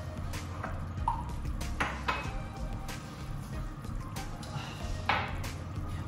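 Metal tongs clicking against a pan and squelching through thick simmering curry sauce as pieces of salmon are turned and coated, a few scattered clicks over several seconds.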